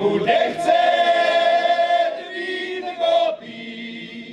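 Male folk choir singing a cappella, holding a long note through the first half, then a phrase that ends near the three-second mark before the singing drops softer.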